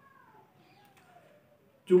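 A faint, drawn-out animal call that slides down in pitch over about a second and a half.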